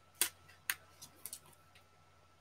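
Five light, sharp clicks over about a second and a half, with two plain ones followed by three fainter ones: trading cards and hard plastic card holders being handled on a tabletop.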